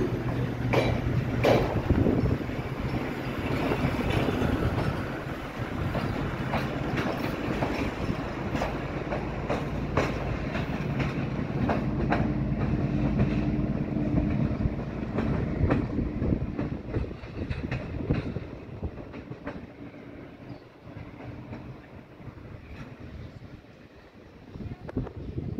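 A departing passenger train of MÁV M41 "Csörgő" diesel locomotive and InterRégió coaches: the coaches' wheels click over the rail joints over a steady diesel engine drone. From about two-thirds of the way in, the sound fades as the train draws away.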